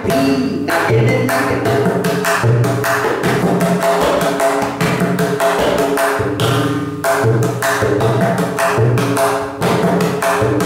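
A set of several tabla drums played by hand in a fast, continuous rhythm of the Anadi taal. The strokes ring with clear pitches, and deeper tones recur about once a second.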